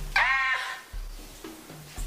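A woman crying out once in pain, a short pitched cry from labour pains.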